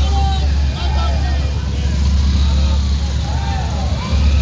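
Many motorcycles running together in a slow street procession, with a steady low rumble and voices calling out over it.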